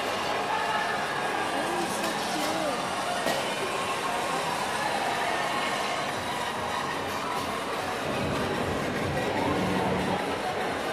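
Shopping-mall background: a steady hum with indistinct distant voices.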